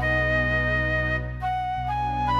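Lowrey Fanfare home organ playing a slow melody of long held notes over sustained bass notes, with a short break just past the middle before the next note.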